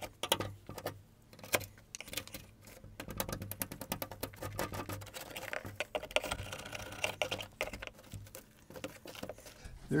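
Brittle, rotted wood of a window sash being picked and broken out by hand: a dense run of small crackling snaps and clicks, thickest in the middle. The wood is rotted through and crumbles as it is pulled away.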